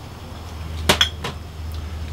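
A few sharp clinks of a small glass spice bottle, two close together about a second in, then fainter ones, over a steady low hum.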